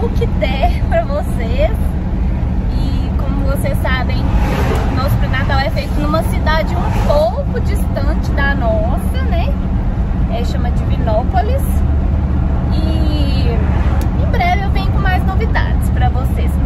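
Steady low rumble of road and engine noise inside the cabin of a moving car at highway speed.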